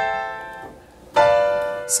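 Piano chords played on a keyboard: a B half-diminished seventh chord (B-D-F-A, the seventh degree of C major) rings and fades. About a second in, a C major seventh chord (C-E-G-B) is struck and fades.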